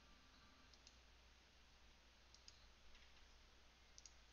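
Near silence with a few faint computer mouse clicks, two of them close together in the middle, over a low steady hum.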